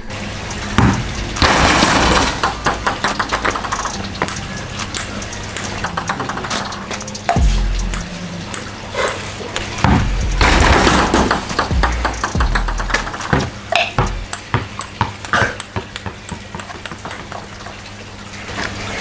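A ping-pong ball bouncing on hard surfaces: runs of sharp light clicks, some coming quicker and quicker as the ball settles, with a couple of louder, noisier clatters among them. Background music with held bass notes plays throughout.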